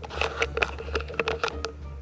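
Handling noise as a handheld camera is swung down and the lounger's fabric is touched: a quick run of small clicks and rustles over a low steady hum.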